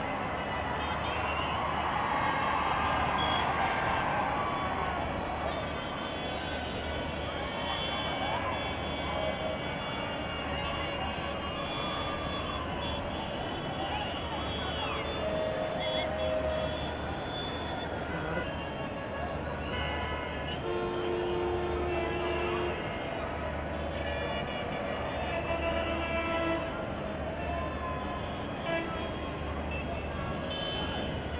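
Outdoor crowd hubbub of many voices mixed with road traffic, with vehicle horns sounding several times, the longest held for about two seconds around twenty seconds in.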